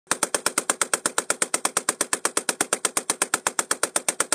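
Russian PM1910 Maxim machine gun, chambered in 7.62x54R, firing one long continuous burst at about eight or nine shots a second.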